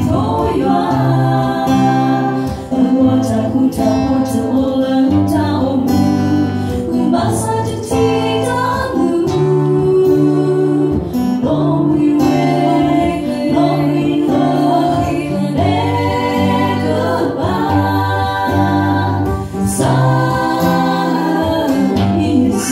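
Three women singing a Karen-language worship song together into microphones, accompanied by an acoustic guitar.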